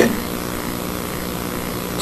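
Steady background hum and hiss of a hall and its old recording during a pause in a speech, with no voice over it.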